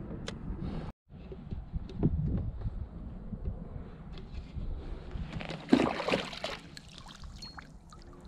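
Water sloshing and trickling as a small plastic cup is dipped into the water beside a kayak and scooped up, with a louder splash about six seconds in.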